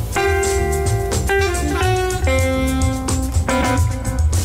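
Small jazz group playing live: archtop electric guitar, upright double bass, drum kit and saxophone. Long held melody notes step from pitch to pitch over a steady bass and drum pulse.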